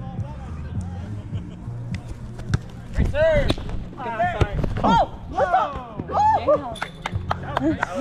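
Players calling out to each other during a grass volleyball rally, loudest in the middle, with a few sharp smacks of the ball being played. Background music with a steady, stepping bass line runs underneath.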